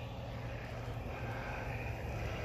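Electric ducted fan of an RC MiG-15 jet running steadily, a fairly quiet, even rushing hum.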